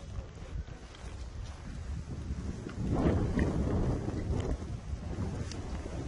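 Wind rumbling on the microphone, with a louder gust starting about three seconds in.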